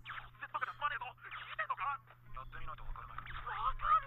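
Speech only: the anime's dialogue playing quietly, thin with no treble, over a low steady hum.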